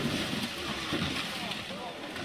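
Rally truck crashing on a gravel stage: a steady rush of engine and gravel noise, with faint voices in the background.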